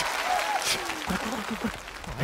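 Studio audience applauding after a punchline, the clapping thinning out as a man's voice cuts back in about a second in.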